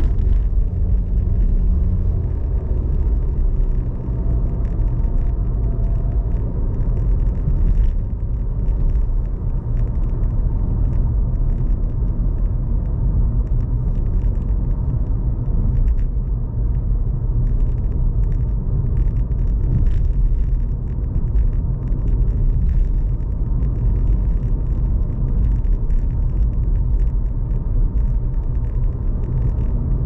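Steady low rumble of road and engine noise heard inside a moving car's cabin, with tyre noise over the road surface.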